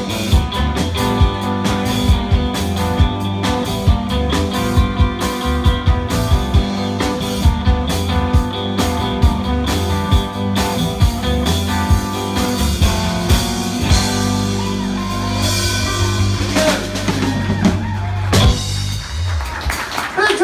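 Live blues band playing: two electric guitars, bass guitar and a drum kit. The steady drumbeat stops about two-thirds of the way in while a chord rings on, and a last hit near the end closes the song.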